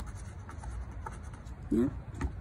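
Scratch-off lottery ticket being scratched with a metal tool, faint dry scraping and small ticks on the card's coating, with a short spoken word near the end.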